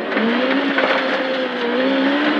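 Proton Satria 1400 rally car's engine pulling hard at high revs, heard from inside the cabin. Its pitch climbs a little at first and then holds steady over constant road noise from the gravel.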